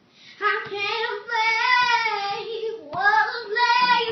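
A young girl singing solo without accompaniment: she comes in about half a second in, holds a long, wavering note through the middle, and sings a further short phrase near the end.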